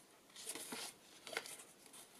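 Paper page of a handmade journal being turned: a brief rustle about half a second in, then a short paper tap a little under a second later.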